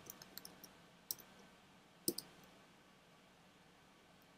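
Faint clicking of computer keys as a short command is typed in the first half second. A single sharper click follows about a second in, and a quick double click about two seconds in.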